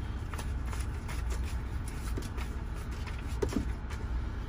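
Paper banknotes rustling and crinkling as hands stir a pile of dollar bills in a plastic bucket, over a steady low rumble.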